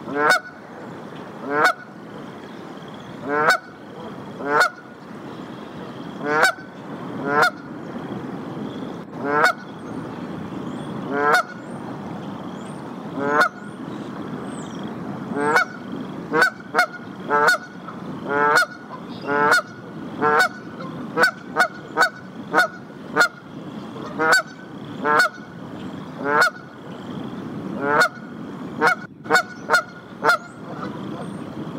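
Canada goose honking over and over, one honk every second or two, quickening to about two a second in the second half.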